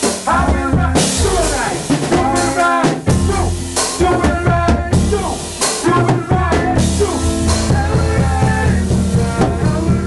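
A live gospel soca band playing in rehearsal: a drum kit keeps a steady beat with bass drum and rimshots under pitched melodic instrument lines.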